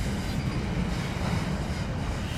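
Freight train of enclosed autorack cars rolling steadily past: an even, continuous noise of wheels on rail.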